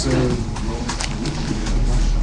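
A man's deep voice making a drawn-out, low hesitation sound between words, mid-sentence.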